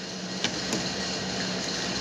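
A kitchen knife lightly tapping a cutting board twice while chopping leafy greens, over a steady low hum.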